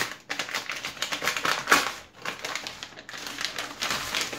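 A paper mailing envelope crinkling and crackling in quick, dense runs as hands pull it open, loudest a little under halfway through.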